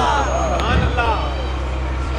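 A man's voice drawn out in a long, rising-and-falling sung phrase, over a steady low hum.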